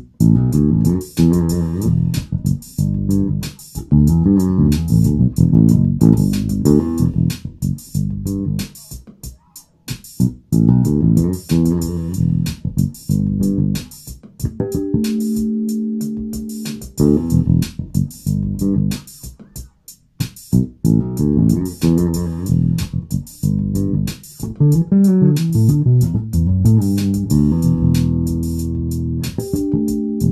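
1978 Music Man StingRay electric bass, played through an amp, playing a funky E minor groove built on fast plucked notes and fills. Held harmonics ring out about halfway through and again near the end.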